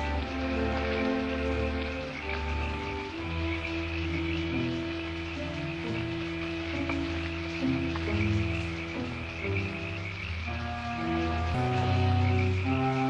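Frogs croaking under a slow orchestral film score that holds long chords, changing every second or two.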